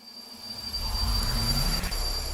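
Swelling rumble-and-whoosh sound effect of a TV channel's animated logo intro, building steadily in loudness out of silence, with a faint steady high whine over it.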